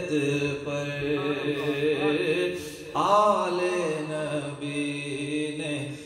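A man's voice chanting an Urdu devotional poem (kalam) in long, melodic held notes. There is a brief dip about two and a half seconds in, then a louder, rising phrase.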